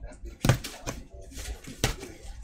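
A box cutter slitting the tape seals on a cardboard trading-card box, with a sharp click near the end.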